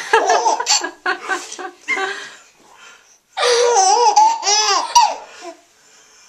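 Baby laughing, with others laughing along: a quick run of short laughs, then after a brief pause a longer, high-pitched laugh that rises and falls in pitch.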